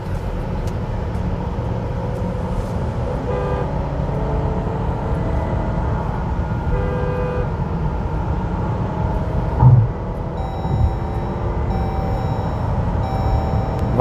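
Steady low road and tyre rumble inside the cabin of a 2023 Jeep Grand Cherokee cruising at speed, with one brief thump about ten seconds in as the tyres cross a road joint. Car horns from other traffic toot briefly around three and seven seconds in and several times near the end.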